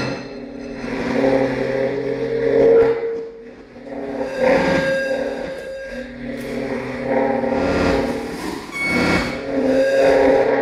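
Electroacoustic music built from electronically processed commuter-train recordings: sustained low droning tones layered with hissing, clattering rail noise that swells and ebbs, dips briefly near the middle, and gives a short cluster of clicks near the end.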